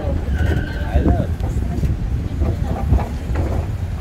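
Indistinct talk over a steady low rumble.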